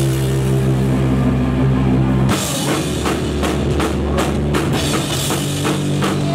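Live rock band: an amplified electric guitar chord rings out held until about two seconds in, then the drum kit crashes in with hard, repeated hits and cymbals, about three a second, as the band plays on.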